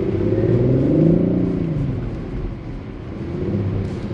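Audi car engine heard from inside the cabin, revving up under throttle to a peak about a second in, then easing off, and picking up again briefly near the end.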